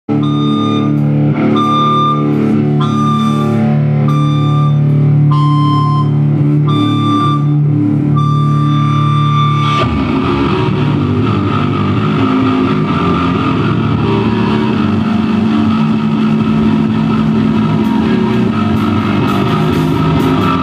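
Live punk band playing through amplifiers. The opening is slow: ringing, held notes with a repeated high note. About ten seconds in, the full band comes in together, loud, fast and dense.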